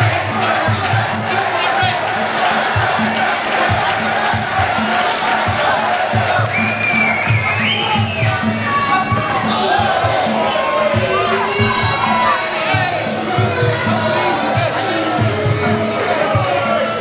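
Muay Thai ringside fight music with a steady drum beat, under a shouting, cheering crowd in an arena.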